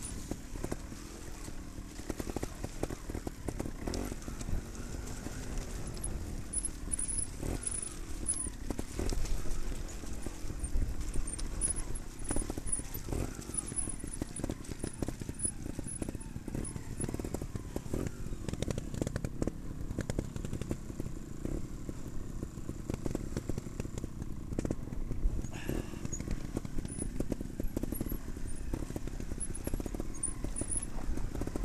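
Trials motorcycle engine running at low revs, its pitch rising and falling with the throttle, with frequent short clicks and knocks as the bike rides a rough rut.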